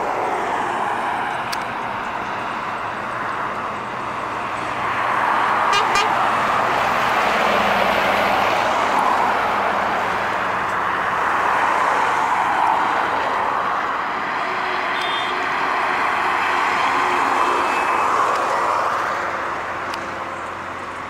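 Loaded diesel trucks and road traffic passing close by on a highway, the engine and tyre noise swelling and fading several times as vehicles go past.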